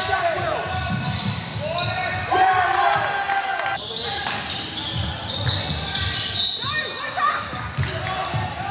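Basketball game heard in an indoor hall: the ball bouncing on the court, with shoes squeaking in short bending squeals, over players and spectators calling out.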